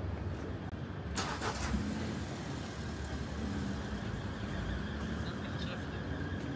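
Road traffic running on a city street, a steady low rumble, with a short hiss a little over a second in.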